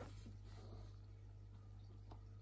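Near silence with a low, steady hum.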